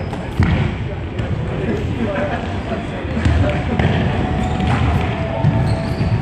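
Running footsteps thudding on a wooden sports-hall floor, with players' shouts echoing around the hall.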